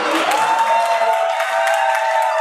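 Audience applauding and cheering in a hall, with a held higher note over the clapping that enters shortly after the start.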